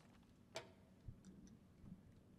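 Near silence: hall room tone, with one sharp click that rings briefly about half a second in and a soft low knock about a second in.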